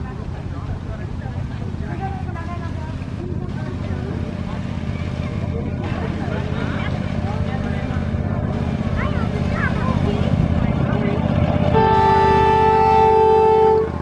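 Ride-on miniature train's diesel-style locomotive running as it approaches, its engine rumble growing steadily louder. Near the end the locomotive sounds a chord horn, held for about two seconds, with passengers' voices faintly under it.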